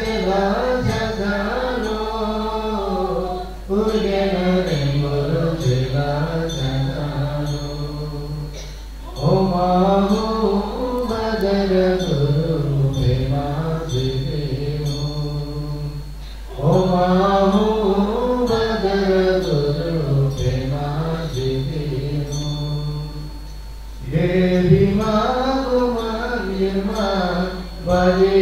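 Buddhist mantra chanting in repeated phrases. A new phrase begins every several seconds after a brief breath-pause, opening with a higher, moving line and settling onto a long held low note.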